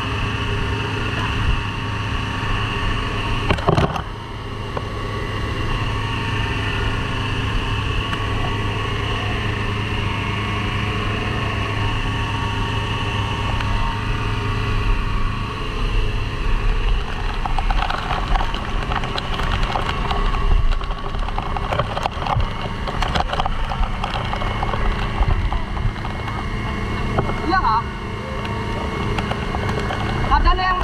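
A small engine running steadily at a constant pitch, with water from a fire hose spraying over it.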